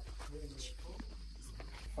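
Faint voices of people talking in the background, quieter than the close speech around it.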